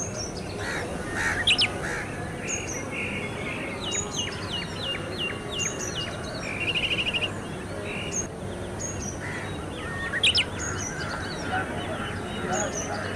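Birds chirping and calling outdoors: many short, high, downward-sliding calls, a rapid trill near the middle, and the loudest calls about a second and a half in and near the end, over a steady low background hum.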